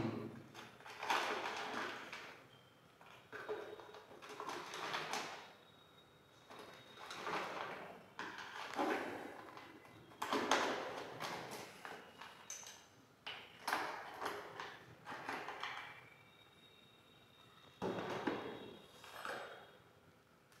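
Spatula scraping and rattling inside a plastic bottle of calcium chloride, scooping out a small amount: a series of irregular scraping rustles, some louder than others, with short gaps between them.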